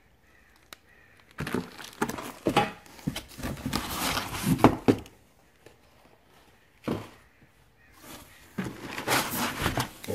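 Packaging being handled: plastic wrapping crinkling and cardboard box flaps rustling in irregular bursts, with a single sharp knock about seven seconds in.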